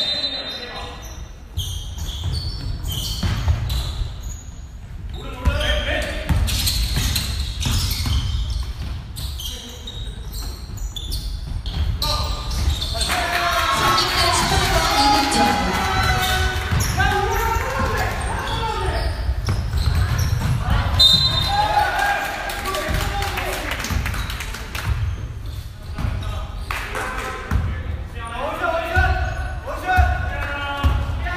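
Basketball being dribbled and bounced on a gym floor during a game, with many short sharp bounces, and indistinct voices echoing in a large hall, busiest in the middle and near the end.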